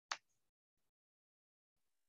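Near silence, with a single short click just after the start.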